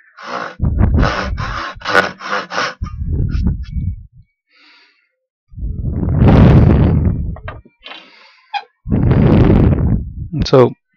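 Fine-tooth back saw cutting through a wooden block held in a vise: a run of quick, short strokes at about three a second, then after a pause a few longer, louder strokes near the middle and near the end.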